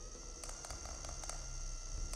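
A small remote-controlled robot ball toy rolling across a metal floor: a steady high electronic whine with several sharp ticks, over a low hum.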